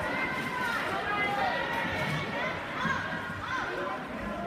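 Indistinct voices of spectators in the stands, talking and calling out while the skaters race.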